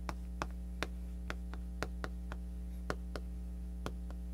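Chalk clicking and tapping against a chalkboard as a word is written: about a dozen sharp, irregularly spaced clicks, one for each stroke, over a steady low hum.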